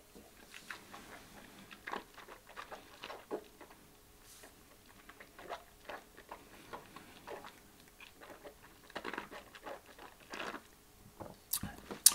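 Faint, irregular wet mouth clicks and lip smacks of a man tasting a sip of whisky.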